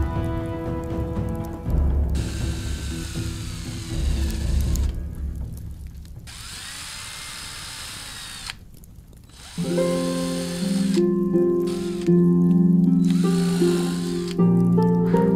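Background music, then a handheld power tool's motor running in two bursts, its whine rising and falling in pitch, before the music comes back in the last few seconds.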